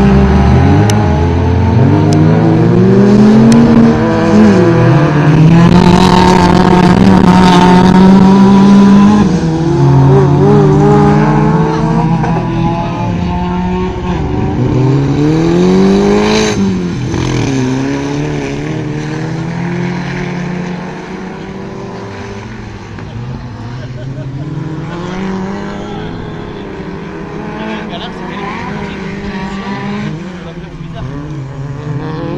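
Several autocross cars racing on a dirt track, their engines revving up and falling away through gear changes, with a few engines overlapping. One car passes close about sixteen seconds in, and the engines grow quieter over the last third as the cars move off.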